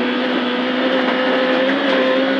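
Proton Satria 1400 rally car's four-cylinder engine held at steady high revs on a flat-out gravel straight, heard from inside the cabin, with steady tyre and gravel noise underneath.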